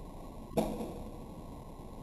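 A single sharp shot from a .22 pellet gun about half a second in, fading quickly, over a steady faint outdoor hiss.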